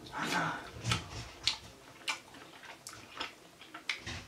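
Close-up chewing of a caramel crunch brownie protein bar with crunchy bits: irregular soft crunches and wet mouth clicks, with a low murmur or two in the first second.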